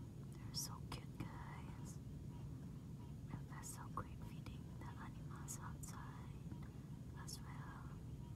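A person whispering: several short phrases with sharp hissing s-sounds, too soft for the words to be made out.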